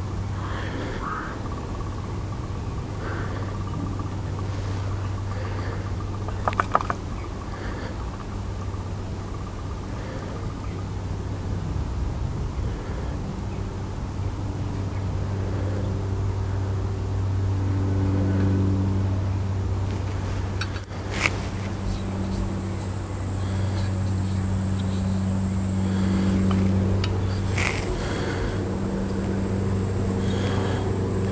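Steady low engine drone from an unseen motor that swells and eases, with a few small clicks about seven seconds in and one sharp click about two-thirds of the way through. The soda syphon refiller under its held-down lever makes little sound of its own: its CO2 capsule has barely been pierced.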